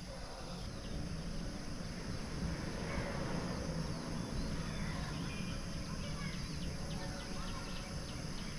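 Steady, high-pitched chorus of cicadas and cricket-like insects, a white-noise-like chirping, over a low rumble.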